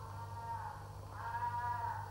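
Two bleating animal calls, a short one at the start and a longer, louder one in the second half, over a steady low hum.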